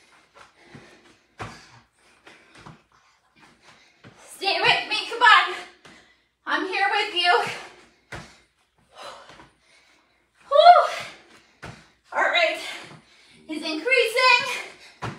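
A woman's voice in short spoken bursts, with a dull thump about every three seconds as feet land on an exercise mat during burpees.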